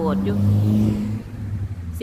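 A passing car on the road beside her, its engine a steady low hum. The hum is loud over the first second or so, then eases off.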